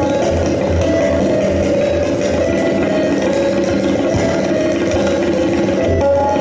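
Tabla played in a fast, dense, even run of strokes, with a harmonium holding a steady repeating melody underneath.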